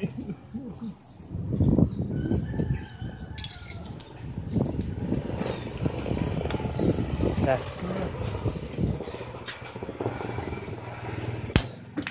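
Background voices and street noise around an outdoor pool table, with one sharp click near the end, typical of billiard balls striking.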